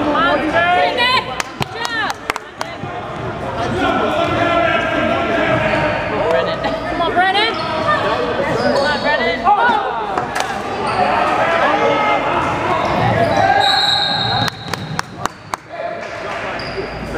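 A basketball bouncing and sneakers squeaking on a hardwood gym floor during play. Sharp bounces and knocks come in clusters near the start and near the end. Voices of players and spectators echo through the hall underneath.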